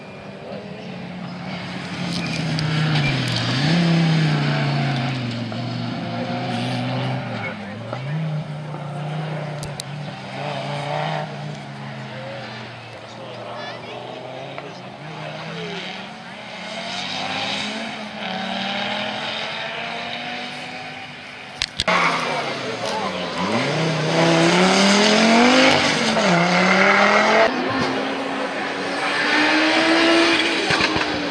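Rally car engines revving up and down through repeated gear changes, the pitch rising and dropping again and again. About three-quarters in, the sound jumps to a louder run: the Audi Sport Quattro S1 Pikes Peak's turbocharged five-cylinder revving hard through the gears as it approaches.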